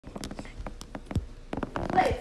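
A rapid, irregular run of faint clicks and crackles.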